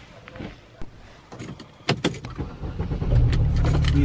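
Light rustling and a few sharp clicks, then from about three seconds in a car engine running, heard inside the cabin as a loud, steady low rumble.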